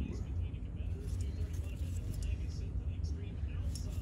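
Steady low hum of the room with a few faint light clicks of a metal carburetor being handled and turned in the hand.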